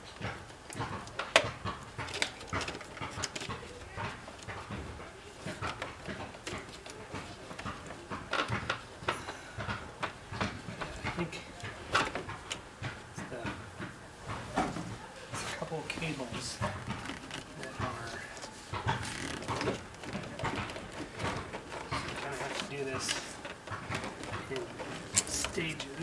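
Hand work on a classic Alfa Romeo's dashboard: irregular clicks, taps and knocks of screws, tools and trim as the dash is unscrewed and loosened.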